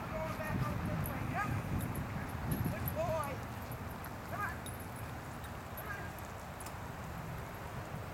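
A small dog yipping or whining in short, high, up-curving calls, about five of them, roughly one every second and a half, over a steady low background rumble.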